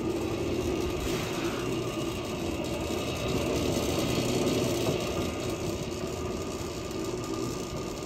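Worthington welding positioner running: its electric motor and gear drive make a steady mechanical hum as the table turns at its single fixed speed.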